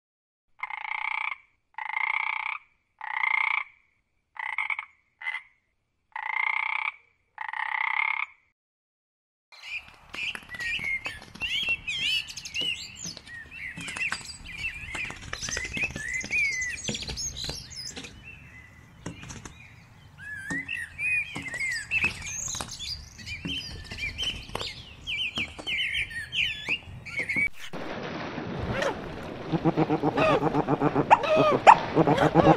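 Frog calling: seven separate croaks, each under a second, over the first eight seconds, then a dense chorus of high chirps and whistles.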